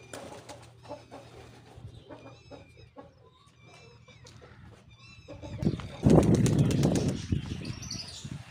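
Short high chirps of small birds repeat over the first few seconds, with light pecking taps from a hen feeding on grain on concrete. About six seconds in, a loud fluttering rush of pigeon wings in take-off or flight lasts over a second.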